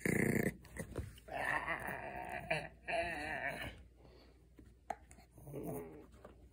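Pomeranian growling with a rubber treat toy clamped in his mouth, a warning growl over keeping the toy. A short loud growl at the start, a longer wavering one from about a second in to nearly four seconds, and another brief one near the end.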